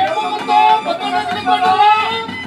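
Nadaswaram, the South Indian double-reed wind instrument, playing a loud, ornamented melody of quickly changing notes with slides between them.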